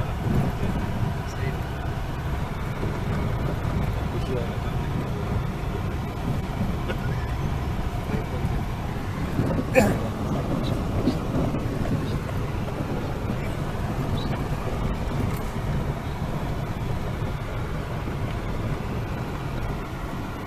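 Vehicle rumble heard from inside the cabin: the engine and tyres running steadily over a rough gravel track. A single sharp knock comes about ten seconds in, as the vehicle jolts over the rough surface.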